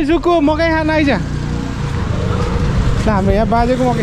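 Street traffic: a steady low rumble of motor vehicles, with a man's voice calling out briefly in the first second and again near the end.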